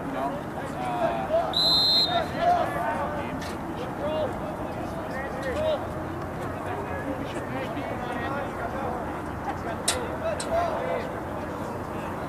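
Players and spectators calling and shouting across an open lacrosse field. A short high whistle blast comes about two seconds in, and a sharp crack sounds near ten seconds in.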